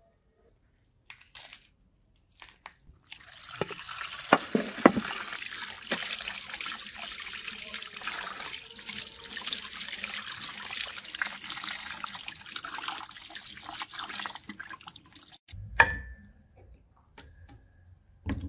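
Tap water running onto a ceramic plate of raw chicken pieces to rinse them, starting about three seconds in and stopping about twelve seconds later, with a few sharp splashes and knocks near its start. A single sharp clack with a short ring follows soon after the water stops.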